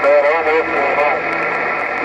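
A voice over a President HR2510 radio's speaker, narrow and tinny over constant static hiss. The voice is clear at first, then weakens to a faint signal with a low steady tone under the hiss.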